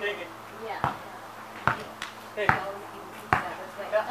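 A basketball being dribbled on a court surface: four single bounces at an even pace, a little under one a second.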